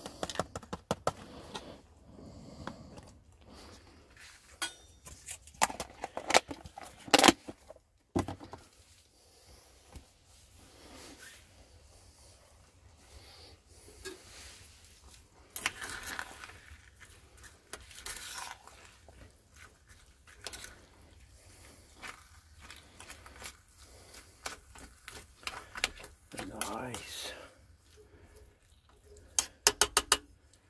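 A metal utensil stirring in a stainless steel saucepan of rice and peas: irregular clinks, knocks and scrapes against the pan, the sharpest knocks about six to seven seconds in.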